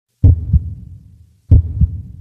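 Heartbeat sound effect: two low lub-dub double thumps, about a second and a quarter apart.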